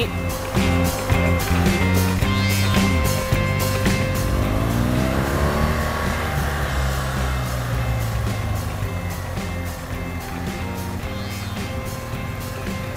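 BMW R 1200 GS Adventure motorcycle's boxer-twin engine running under way and passing close by about halfway through, over background music.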